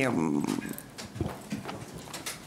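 A man's voice trails off, then a quieter pause with a few soft, scattered knocks and rustles from handling at a press-conference table.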